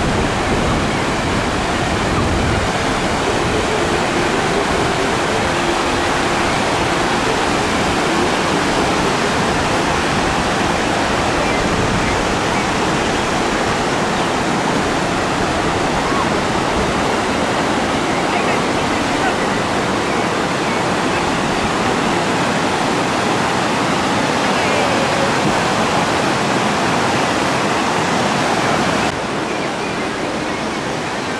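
River water rushing steadily over a series of low stepped rock cascades. The sound drops slightly near the end.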